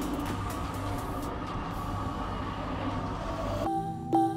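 Steady rumble of a boat's engine running on the water. It cuts off abruptly near the end as piano music starts.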